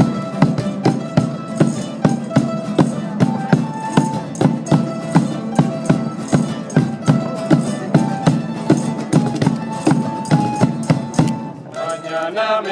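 A Portuguese student tuna playing an upbeat instrumental: classical guitars and bandolins strummed in a steady beat, with a melody on top and a bass drum keeping time. The music drops out briefly near the end before a new phrase begins.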